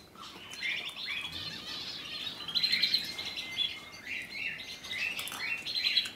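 Small birds chirping and twittering in a quick run of short high chirps.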